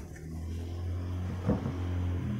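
A steady low motor hum that slowly grows louder, with one short knock about one and a half seconds in.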